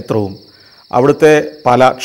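Crickets chirring steadily in one high-pitched band, heard under a man talking.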